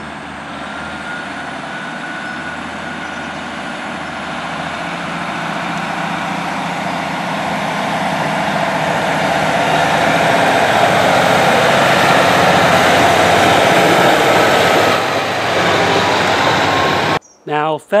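Class 150 Sprinter diesel multiple unit running past at close range, its underfloor diesel engines and wheels on the rails growing steadily louder to a peak about ten to fourteen seconds in. The sound cuts off suddenly near the end.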